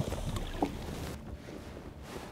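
Lake water sloshing with a low wind rumble on the microphone; the higher hiss drops away about a second in, leaving a duller wash.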